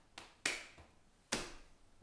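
Hand claps: a light clap, a sharper one right after it, then another about a second later.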